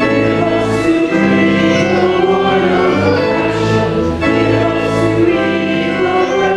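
A church congregation singing a hymn together, with organ accompaniment holding sustained chords.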